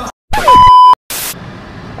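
Edited-in electronic bleep: a loud, steady single tone about half a second long, with a brief falling swoop at its start and a short burst of hiss just after it, set between moments of dead silence.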